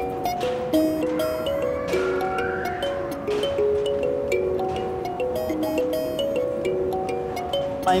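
A kalimba (thumb piano) with metal keys on a wooden board, played by thumb-plucking: a flowing melody of clear ringing notes, two or three a second.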